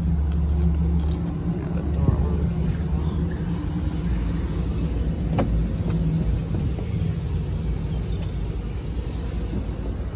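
Low, steady rumble of a 2009 Mercedes GL450's V8 idling, with a few light clicks at the start, about two seconds in and past five seconds.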